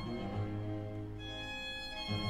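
Bowed strings playing classical chamber music, a viola among them, in long sustained notes over a held low bass line; the harmony shifts about a second in.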